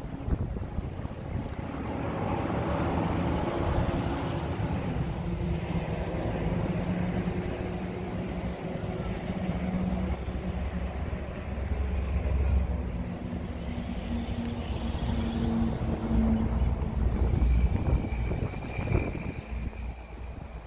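An engine running steadily nearby, its low hum drifting slightly in pitch, with wind gusting on the microphone.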